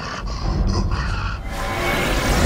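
Dramatic film score with a steady low rumble. About three quarters of the way through, a broad rushing sound effect swells in.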